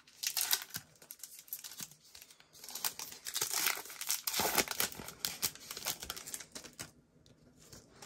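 Plastic wrapper of a Panini Prizm trading-card pack crinkling and tearing as it is ripped open, loudest through the middle and dying away to a few faint clicks near the end.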